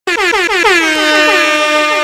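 DJ air horn sound effect: a rapid stutter of short blasts, each dropping in pitch, that runs into one long held horn note.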